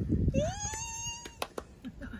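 Shih Tzu puppy giving one high whine, about a second long, that rises in pitch and then holds steady, followed by a couple of small clicks.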